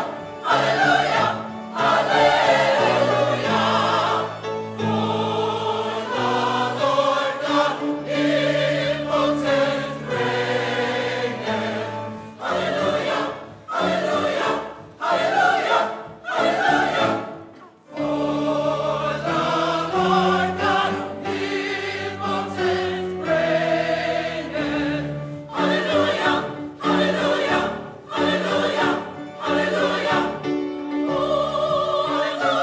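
Mixed choir of adult and children's voices singing together, phrase after phrase with short breaths between.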